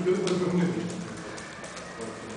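A man's voice holding a drawn-out hesitation sound for about a second, then a short pause with faint room noise.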